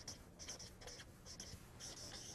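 Chalk writing on a blackboard: faint, quick scratchy strokes in an uneven run.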